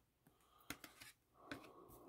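Near silence, with a few faint clicks and rustles from trading cards being handled and set down.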